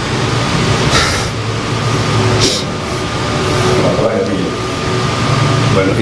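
A man's indistinct voice, with a couple of brief hissy sounds, over steady background noise.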